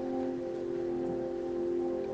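Soft ambient background music of long, steady held notes layered together, with a faint even hiss beneath.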